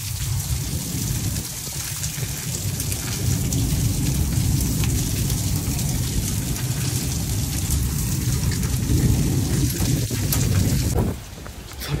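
Hailstorm: hail and rain pelting down in a steady dense rush, with many sharp ticks of hailstones striking. The sound drops away sharply about eleven seconds in.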